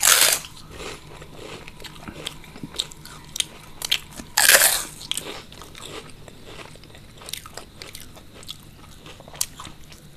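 Close-miked eating of crispy deep-fried snacks: two loud crunching bites, one right at the start and one about four and a half seconds in, with small crackles of chewing between.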